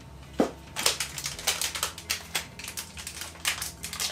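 Blind-box pin packaging being handled and opened: a sharp snap about half a second in, then a run of quick, irregular crinkles and crackles.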